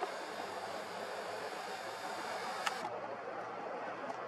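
Steady low hiss of outdoor background and microphone noise, with a single sharp click a little before three seconds in.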